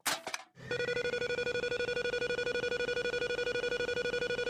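Big game-show prize wheel spun hard: a short burst of noise as it is heaved around, then a rapid, even clicking with a steady whirring hum as it spins at speed without slowing.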